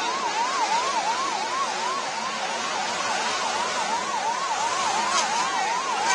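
Emergency vehicle siren sounding a fast electronic yelp, its pitch sweeping up and down about three times a second, over a steady rush of background noise.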